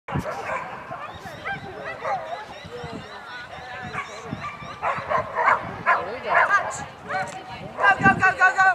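Dog barking and yipping over and over in short, high calls that bend in pitch, with a quick run of yips near the end. Voices can be heard in the background.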